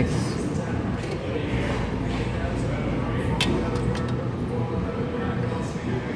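Restaurant dining-room hubbub: steady indistinct background voices, with a single light click about three and a half seconds in.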